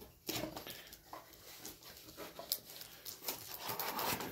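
Handling noises: irregular rustling, crinkling and light knocks as a card in a plastic sleeve is taken out of a box.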